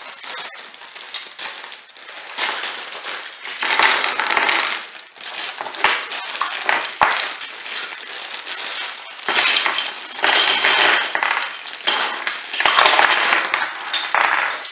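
Clear plastic bags of Lego Duplo bricks crinkling and rustling as they are handled and torn open, in loud bursts, with the plastic bricks inside clinking and clattering against each other.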